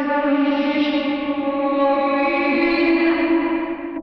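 A female rock vocal played backwards and drenched in added reverb: one long, held, echoing sung note at a steady pitch, sounding distant, the middle stage of building a reverse-reverb effect.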